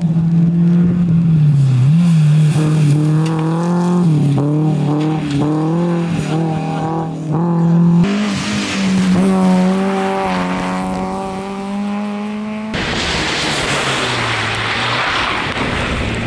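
Peugeot 206 rally car's engine revving hard through a tarmac corner, its pitch dipping and climbing again and again with throttle lifts and gear changes as it passes close by. About 13 s in the sound cuts suddenly to a steady hiss with a quieter, more distant engine under it.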